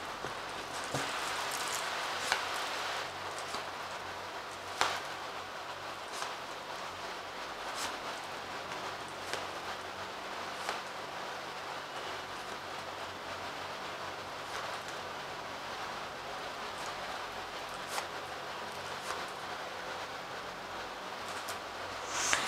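Tarot cards being drawn from a deck and laid down one by one on a cloth-covered table: short soft card snaps and rustles every second or few seconds, over a steady background hiss.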